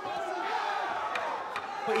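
Arena crowd shouting and calling out during a kickboxing bout, a steady wash of many voices with a couple of faint knocks about halfway through.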